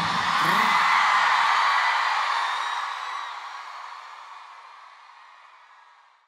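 Arena crowd cheering and screaming at the end of a song, fading out over the last few seconds.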